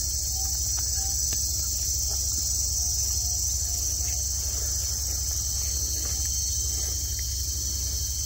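Steady, high-pitched, unbroken drone of a chorus of insects.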